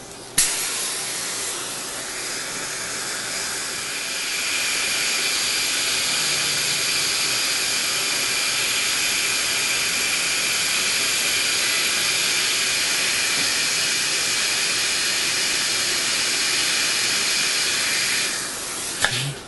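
Dental suction hissing steadily during a laser gingivectomy. It starts with a click about half a second in and gets louder about four seconds in.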